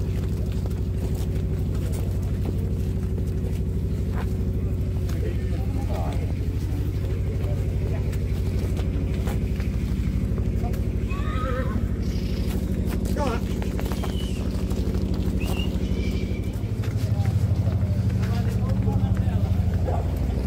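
Ponies being led on a paved lane, their hooves clopping, with a pony whinnying about eleven seconds in. Underneath runs a steady low engine hum, which grows louder near the end.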